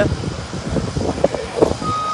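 Outdoor background noise with a few small knocks in a pause between recited phrases. Near the end a vehicle backup alarm starts a steady beep, one of a repeating on-off series.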